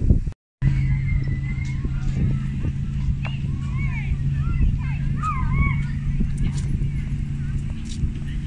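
Outdoor playground ambience: wind rumbling on the microphone under a steady low hum, with short high rising-and-falling calls from distant voices in the middle.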